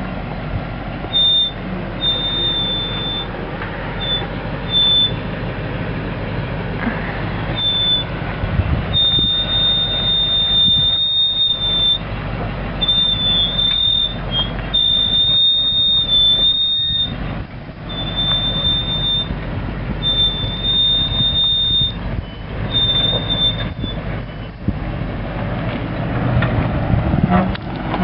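Land Rover Range Rover P38 crawling down a steep rock notch with its engine running low, and a high, thin squeal from its brakes held on the descent that keeps coming and going, in short chirps at first and then in stretches of one to three seconds.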